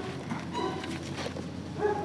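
Two short pitched animal calls, about a second apart, the second louder, over a steady background noise.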